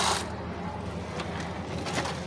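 A faucet's stream pouring into a plastic bucket of soapy water cuts off just after the start as the tap is turned off. A couple of faint clicks follow over a low background.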